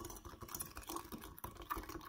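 A spatula stirring yeast and sugar into lukewarm water in a glass measuring jug, with quick, irregular light clicks and scrapes as it knocks against the glass, over a faint swish of water.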